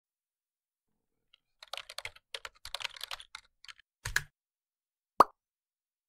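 A quick, irregular run of keyboard typing clicks for about two seconds, a heavier key click with a low thud, then one short, sharp plop, the loudest sound.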